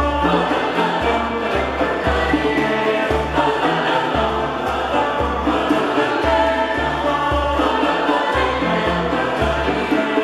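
A mixed choir singing with a small string ensemble of violins, cello and a plucked lute, the bass moving in steady separate notes beneath the held voices.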